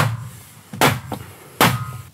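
Rubber mallet striking a wooden block held against an aluminum jamb insert, tapping the cover until it snaps into the sliding door frame: three sharp blows, a little under a second apart, each with a short ring.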